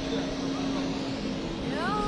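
Steady hum and rush of air from a floor-standing air-conditioning unit, with a low steady tone that fades out about halfway through. Near the end a tone glides upward and then holds.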